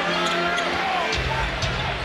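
Basketball being dribbled on a hardwood court, with arena music playing underneath.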